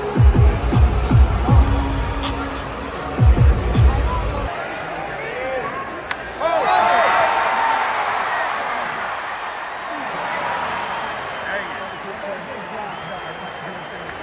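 Ballpark PA music with a heavy bass beat for about four seconds, cut off suddenly; then a stadium crowd cheering and shouting, loudest about six seconds in and slowly dying down.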